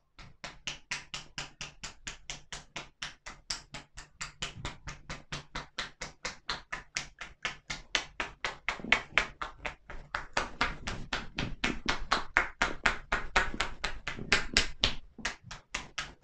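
Percussive shoulder-tapping massage (kōdahō): hands striking a seated person's shoulders over a T-shirt in a steady rhythm of about five strikes a second. It starts abruptly and the blows grow heavier in the second half.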